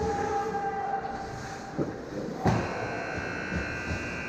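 Ice hockey play heard from the goal: skate blades scraping on the ice under a steady whining hum, with a sharp stick or puck knock about halfway through and a louder one past the middle.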